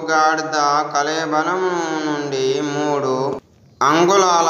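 A voice reciting a mantra in a steady, drawn-out chant, breaking off briefly near the end.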